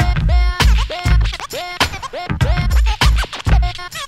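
DJ scratching a vinyl record on a turntable over a hip hop beat: deep bass hits under short chopped samples that sweep up and down in pitch as the record is pushed back and forth.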